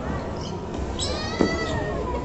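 A single high-pitched squeal lasting about a second, falling slightly in pitch, with a sharp click partway through.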